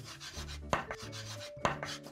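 Chalk being written across a chalkboard: scratchy strokes, with two sharp taps of the chalk on the board, a little under a second apart.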